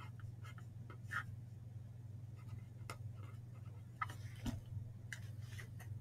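Pen scratching and tapping faintly on paper as a short formula is written out, in scattered short strokes, with a soft knock about four and a half seconds in, over a steady low hum.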